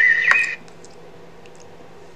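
A high steady tone with a sharp click from a video's audio, cut off suddenly about half a second in. A low steady hum follows, with a few faint clicks.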